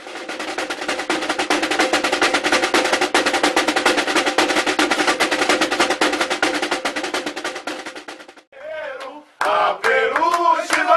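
Samba-school drums played with sticks in a dense, rapid rolling pattern, stopping about eight and a half seconds in. Voices shouting come in near the end.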